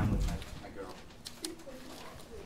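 Faint voices talking at a distance in a small room, with a few light clicks.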